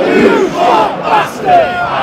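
Football crowd in the stand shouting together: a held chant breaks off into a mass of yelling voices, with louder surges about a second in and again about halfway through.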